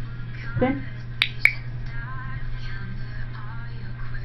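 Pet-training clicker clicked twice in quick succession, marking the cat's trick for a treat.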